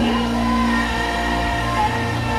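Heavy metal band playing live through the PA: amplified electric guitar and bass holding long notes under a singer's voice.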